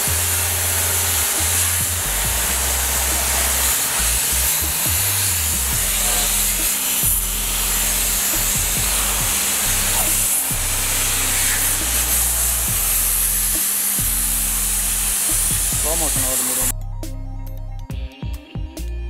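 Compressed-air spray gun hissing steadily as it mists a diesel-and-oil mixture onto a motorcycle, then cutting off suddenly about seventeen seconds in. Background music with a bass line plays underneath.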